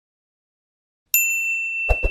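Notification-bell 'ding' sound effect from a subscribe-button animation: a sudden bell-like ding about a second in, ringing on a steady high tone. Two sharp clicks come near the end as it cuts off.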